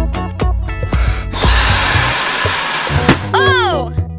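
Cartoon background music, then about a second and a half in a loud, steady hiss of air rushing out, used as a sound effect for the tyre going flat again. Near the end comes a short, falling, disappointed vocal sound.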